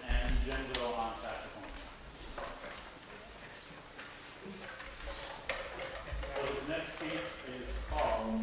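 Indistinct voices talking, with a few sharp clicks from instruments and music stands being handled.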